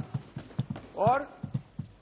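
Members of parliament thumping their desks in approval: a quick, irregular scatter of knocks.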